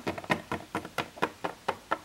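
Small hard plastic Littlest Pet Shop toy figure tapped again and again on a wooden tabletop as it is hopped along by hand, about four sharp taps a second.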